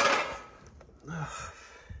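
A man's loud breathy exhale fading away, then a short groan, "ugh", about a second later.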